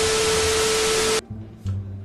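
Glitch transition sound effect: loud TV-static hiss with a steady beep tone, cutting off abruptly just over a second in, leaving low background music.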